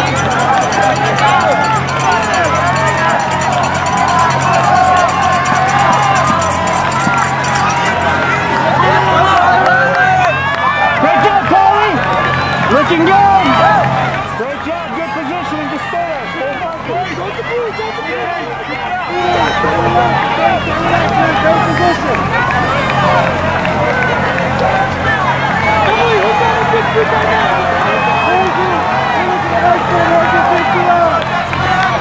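Spectators along the course shouting and cheering encouragement as a pack of runners goes by, many voices overlapping, with a quieter stretch about halfway through. A steady low hum runs underneath.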